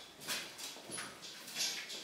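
Footsteps of people walking across a hard floor: a few soft, irregular steps.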